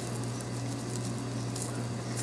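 Faint rustling and creaking of jute twine and dry twigs as the twine is pulled tight into a knot around the broom's bundle of sticks, over a steady low hum.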